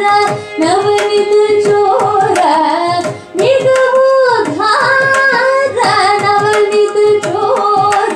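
Carnatic female vocal singing held, ornamented notes with gliding pitch, accompanied by violin and a steady run of mridangam strokes. There is a brief break in the phrase about three seconds in.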